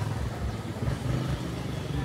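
Street traffic with a motor vehicle engine running close by: a steady, uneven low rumble.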